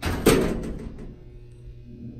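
Dover elevator car doors slamming shut with one loud bang just after the start that rings out over about half a second, followed by a low steady hum. The hard close comes from a door operator that leaves a bit to be desired.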